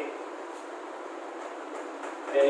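Chalk writing on a blackboard, with faint scratches and taps, over a steady background hiss.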